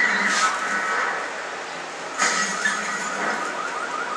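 Television audio from a commercial break between spoken lines, with music and sound effects, fairly loud at the start and again from about two seconds in.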